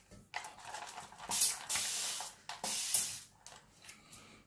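Xiaomi water spray bottle spraying in two hissing bursts: a longer one of about a second starting a little over a second in, then a shorter one just before three seconds in. Its trigger gives a sustained mist from a single press.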